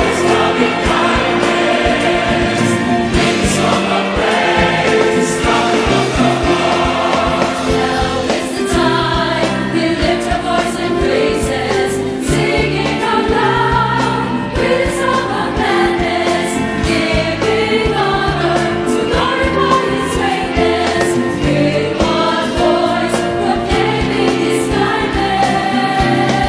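A large mixed choir singing a hymn of praise in full harmony with instrumental accompaniment. The words sung are 'Thank the Lord for all His loving kindness, singing our love with a song of gladness, with one voice proclaiming His kindness.'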